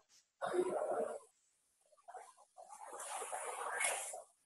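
Indistinct background noises coming through a participant's unmuted microphone on a video call: a short burst about half a second in, then a longer stretch from about two seconds in that grows louder toward the end.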